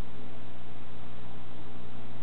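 Steady hiss with a low, even hum underneath: constant background noise with no distinct events.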